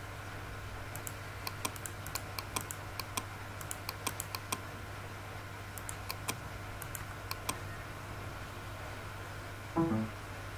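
A run of sharp computer-mouse clicks, many in quick pairs, over a steady low electrical hum, followed by a brief louder thump near the end.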